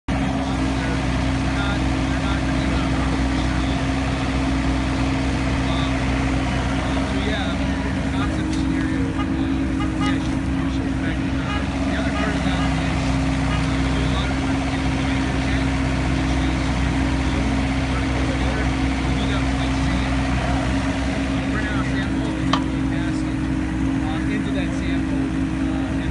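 Compact excavator's engine running at a steady speed with a constant hum while the arm and bucket dig. A single sharp tap near the end.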